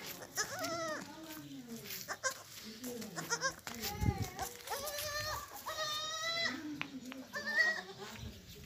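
Baby goats bleating: a string of short, quavering calls, each under a second long, with a low thump about four seconds in.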